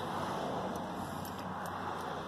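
Steady outdoor background noise, an even hiss with no distinct source, fading slightly over the two seconds.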